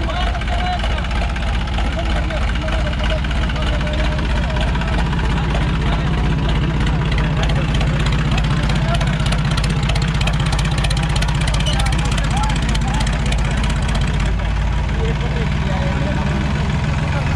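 Massey Ferguson 9000 tractor's diesel engine running steadily, its low drone growing stronger about five seconds in, with a crowd's voices over it.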